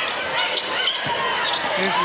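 A basketball bouncing once on a hardwood court about a second in, over steady arena noise.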